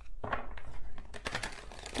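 A deck of oracle cards being shuffled and handled: a quick, irregular run of soft flicks and taps.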